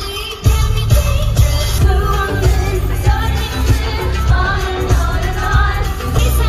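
Live K-pop music in an arena, recorded on a phone: a woman sings into a microphone over a heavy bass line and a steady beat of about two strikes a second.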